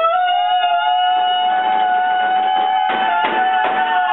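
A high note sung and held steady for about three seconds, with a few sharp rhythmic beats coming in near the end.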